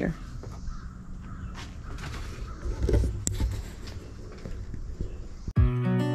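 Faint clatter and rustle of tools and hardware being sorted on shelves. Near the end it is cut off suddenly by strummed acoustic guitar music.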